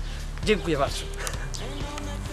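A man's voice saying "okay" about half a second in, over faint background music.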